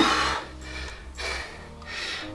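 Background music with a man breathing out hard from exertion twice, once at the start and again about a second later.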